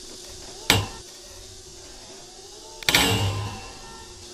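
Stunt scooter knocking against a steel rail as it is hopped up and its deck is set down on top: one short sharp knock about a second in, then a louder metal clank near the end that rings briefly.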